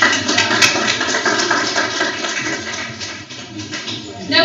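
A room full of people applauding. The applause is loud at first and slowly dies away.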